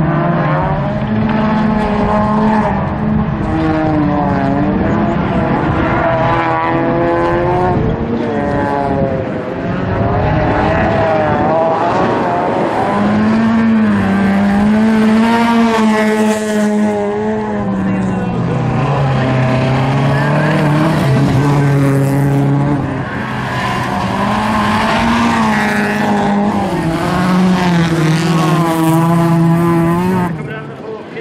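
Engines of several bilcross race cars revving hard around the track, their notes climbing and dropping in steps as they accelerate and change gear.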